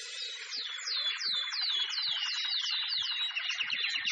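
Birds chirping: quick, high, falling whistles repeated several times a second over a steady twittering chorus.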